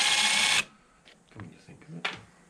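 Cordless drill/driver running steadily as it backs a screw out of a Holset VGT turbo actuator's cover, stopping abruptly about half a second in; light handling clicks follow.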